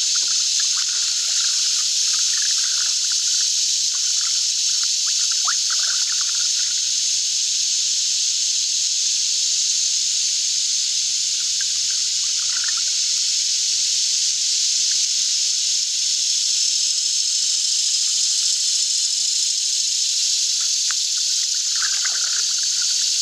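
Water trickling and dripping off a canoe paddle in short spells during the first several seconds, again around halfway and near the end, over a steady high-pitched hiss.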